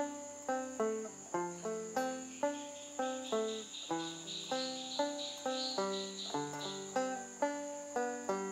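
Banjo picking a melody in single plucked notes, about two to three a second, each note ringing and fading before the next.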